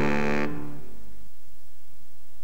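Trailer music ending on a final held orchestral chord, which cuts off about half a second in and dies away within the next second, leaving only faint tape hiss.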